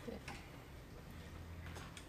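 Quiet room tone with a low hum and a couple of faint clicks.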